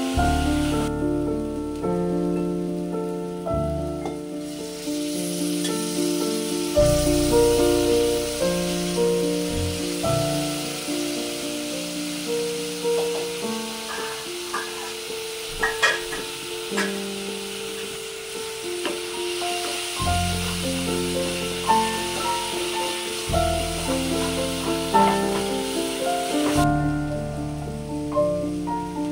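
Masala sizzling as it fries in a pot while a wooden spatula stirs it, with a few sharp knocks of the spatula against the pot around the middle. The sizzle starts a few seconds in and stops shortly before the end, all over background music with piano-like notes.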